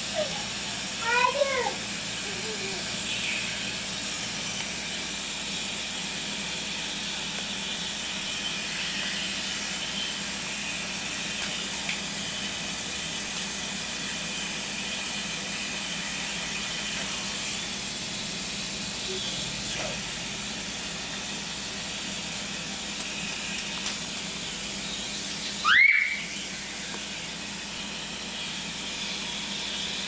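A garden hose with a spray nozzle running, a steady hiss of water. A baby's short babbling cries come near the start, and one loud rising squeal comes near the end.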